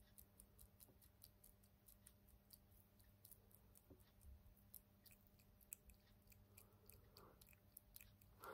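Near silence: quiet workshop room tone with a steady low electrical hum and faint, irregular soft clicks.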